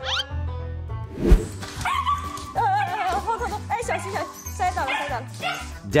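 A Shiba Inu whining and yelping in many short, high, wavering calls, excited at greeting its owner home, over light background music. A single sharp thump comes about a second in.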